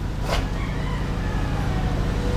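Steady low mechanical hum, with a brief click about a third of a second in.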